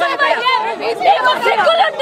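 Several people shouting and talking over one another at once, in a tight, agitated group.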